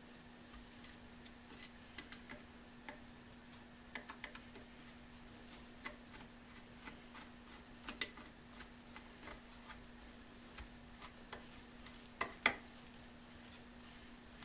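Screwdriver turning the screws of an electric motor's junction box cover: scattered small clicks and scrapes of the blade in the screw heads, with a sharp click about eight seconds in and two more near the end. A faint steady hum runs underneath.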